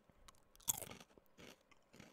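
Potato chips being chewed close to the microphone: a string of short crunches, the loudest about two-thirds of a second in.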